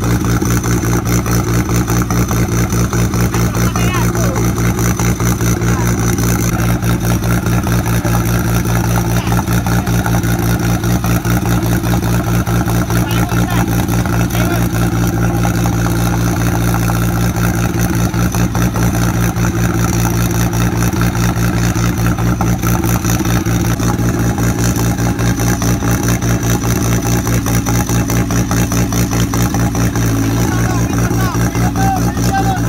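Off-road buggy's engine idling steadily, a loud low throb with an even, rapid pulse that does not change pitch, with voices faintly behind it.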